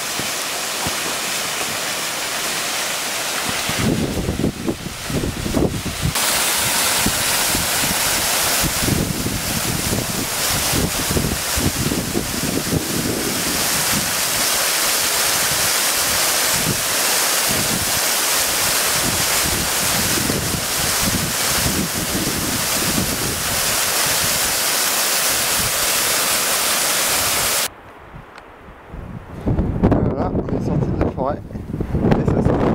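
Mountain waterfall rushing over rocks, a loud steady rush of falling water, with wind buffeting the microphone in uneven gusts from about four seconds in. The water noise cuts off abruptly near the end.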